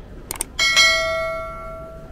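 Subscribe-button sound effect: a quick double mouse click, then a bright bell ding that starts about half a second in and rings on, fading over about a second and a half.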